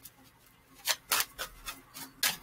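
A deck of spirit message cards being shuffled by hand: about four short snaps of the cards in the second half.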